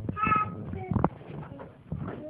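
A young child's voice giving a short, high-pitched squeal, followed about a second in by a couple of sharp short knocks.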